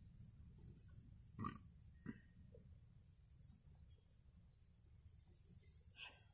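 Near silence: faint background tone, broken by two faint, brief sounds about one and a half and two seconds in.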